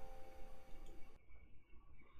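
Faint tail of the played video's soundtrack, a couple of soft held tones over hiss, cut off abruptly about a second in as playback is paused, leaving quiet room tone.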